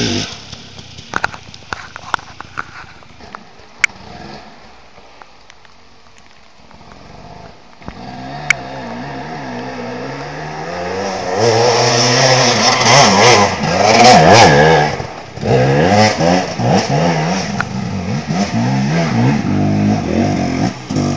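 Two-stroke engine of a KTM 300 EXC enduro motorcycle climbing a hill. It is quiet at first apart from a few sharp knocks. Then it comes in again about eight seconds in and revs hard and unevenly, the pitch rising and falling, loudest a little past the middle.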